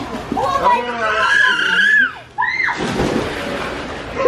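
Children shouting and shrieking in high voices, then, about two and a half seconds in, a burst of rushing noise lasting over a second.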